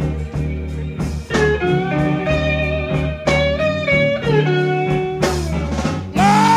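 Electric Chicago blues band playing an instrumental passage with no singing. A lead electric guitar plays held, bending notes over bass and drums.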